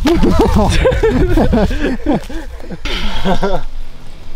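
A man laughing in quick repeated pitched bursts, a long run and then a shorter one, with exclamations, over a low rumble of wind or handling on the microphone.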